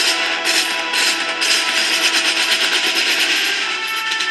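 Marching band playing, with a line of marching snare drums beating many quick strokes over held notes from the wind instruments.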